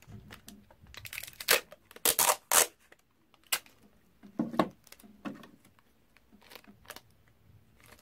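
Adhesive tape pulled off the roll of a desktop tape dispenser in several quick, loud rips about one to two and a half seconds in, followed by softer crackles and taps of the tape being torn and handled.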